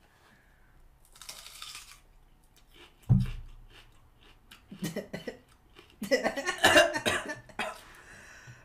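A person biting and chewing raw onion, then coughing repeatedly in loud bursts in the last few seconds, set off by the raw onion's sharpness. There is a single low thump about three seconds in.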